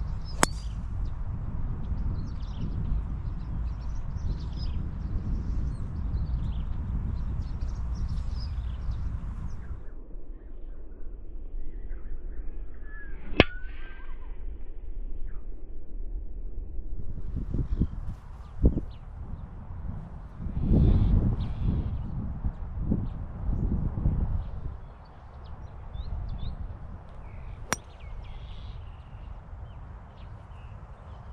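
Low outdoor rumbling noise that drops away for several seconds in the middle and then swells back, with small birds chirping. Three sharp clicks come about thirteen seconds apart.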